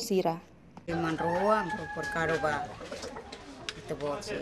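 A rooster crowing once, about a second in: one drawn-out call lasting under two seconds that rises and then tails off.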